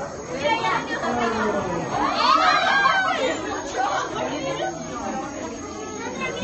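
Background chatter of several people talking at once, with a higher-pitched voice rising and falling about two to three seconds in.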